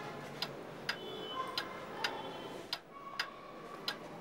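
A clock ticking steadily, about two ticks a second.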